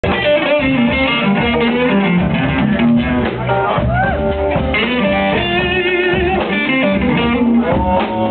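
A live blues band playing, led by electric guitar over bass, drums and keyboard.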